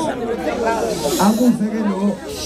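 A man's voice speaking into a microphone. About a second in there is a brief hiss, like a drawn-out 's' or a hush.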